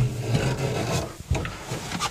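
Rubbing and shuffling noises with a few sharp knocks as someone climbs into a tractor cab and sits down, over a low steady hum.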